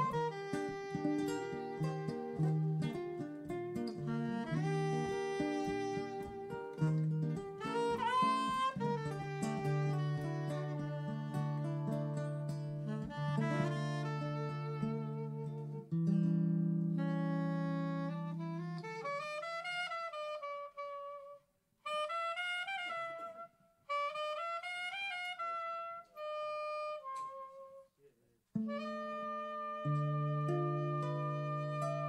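Live instrumental duo of guitar and saxophone: the saxophone plays a jazzy melody over sustained guitar chords. About two-thirds of the way through, the guitar drops out and the saxophone plays alone in short phrases with bends and brief gaps, before the guitar comes back in near the end.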